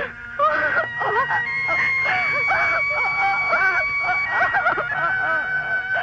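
Film background score: several held notes under a wavering melody line that arches up and down again and again, with a wail-like, mournful sound.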